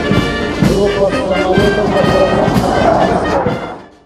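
Brass band music with sustained trumpet and trombone notes, fading out near the end.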